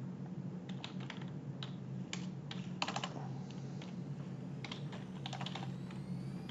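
Typing on a computer keyboard: irregular runs of light keystrokes with short pauses between them, over a low steady hum.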